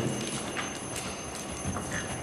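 Hoofbeats of a horse cantering on arena footing, a few separate thuds spaced irregularly.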